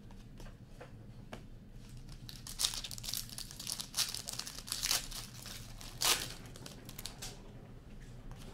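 Trading cards clicking lightly as they are handled. Then, from about two and a half seconds in until near the end, the wrapper of a hockey card pack crinkles and tears as it is opened, in several loud bursts.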